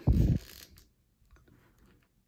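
Hands handling a plastic action figure: a short low sound right at the start, then a few faint soft clicks.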